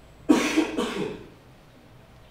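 A person coughing twice in quick succession, loud and abrupt.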